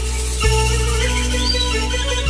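Instrumental folk-song introduction played on a Korg Pa4X arranger keyboard: a bending, gliding melody over sustained low bass notes, with a bass change about half a second in.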